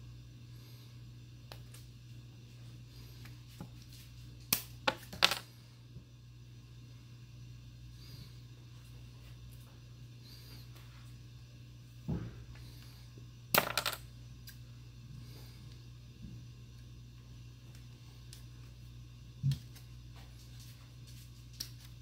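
Steel scissors snipping through a stiff plastic strip: sparse sharp clicks, two quick groups of snips about a quarter and two-thirds of the way through and single snips between, over a low steady hum.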